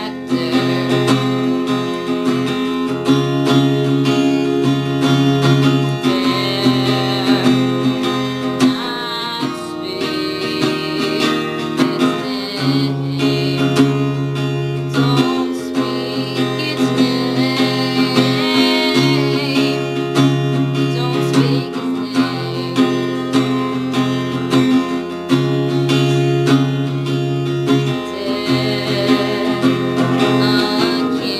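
Acoustic guitar strummed steadily, with a woman singing over it in held, wavering notes that come and go several times.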